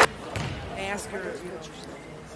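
A basketball bouncing on a hardwood gym floor, a few soft thuds in the first half second, with faint voices echoing in a large hall.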